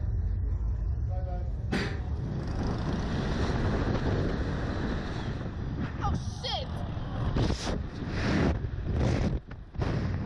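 Slingshot reverse-bungee ride launching, heard from the camera mounted on the capsule: a sharp clunk about two seconds in, then loud rushing wind noise in surges as the capsule flies, with a rider's brief gasps or cries.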